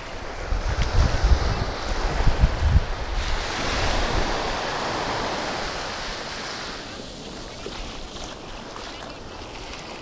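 Small waves breaking and washing up a sandy beach, the surf swelling about four seconds in and then fading. Wind buffets the microphone in the first few seconds.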